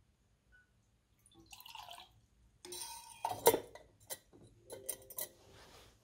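Water being poured into a copper calorimeter can, splashing in short spells, then several light knocks and clinks as the can's lid and the apparatus are handled.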